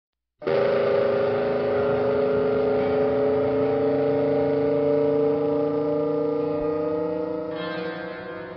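A loud sustained drone of several tones together, slowly rising in pitch. It starts abruptly just under half a second in and eases off near the end.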